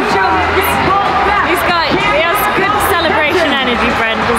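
People talking, with several voices overlapping.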